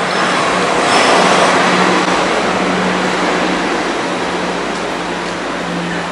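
City street traffic noise, with a passing vehicle swelling about a second in and slowly fading, over a steady low hum.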